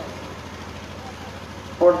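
A pause in a man's amplified, chant-like sermon: only a steady low hum and faint background noise through the public-address system, until his voice comes back loudly near the end.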